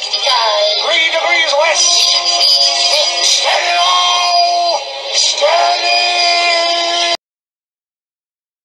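Electronically processed, pitch-shifted singing over music, with wavering, sliding notes and some long held ones. It cuts off suddenly about seven seconds in, leaving silence.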